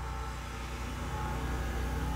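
Steady low-pitched background hum.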